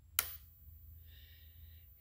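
Zero FX battery module's main contactor closing with a single sharp click, energised by about three volts applied between its signal pin and the negative terminal.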